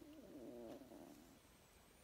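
A faint, low, wavering voice-like hum lasting about a second and a half.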